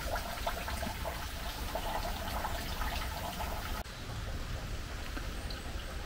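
Water trickling and splashing, with many small irregular ticks.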